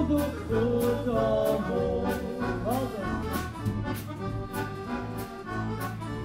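Live dance band playing an instrumental break of a quickstep at 186 bpm: accordion carrying the melody over drum kit, bass and guitar, with cymbal and snare strokes about three a second.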